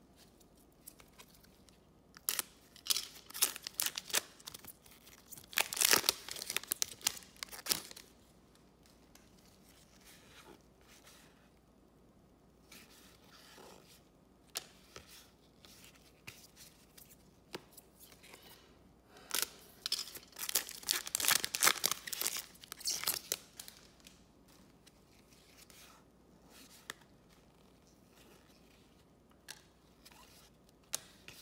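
Trading card pack wrappers being torn open and crinkled, in two spells of loud crackling with a quieter stretch of cards being flipped through in gloved hands between them.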